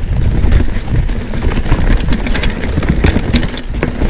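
Orange P7 steel hardtail mountain bike riding fast over a rooty dirt trail: a continuous low rumble of tyres and air over the camera, broken by frequent quick clicks and clatters as the bike's chain and frame rattle over bumps.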